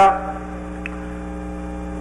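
Steady electrical hum, a few low tones held level without change.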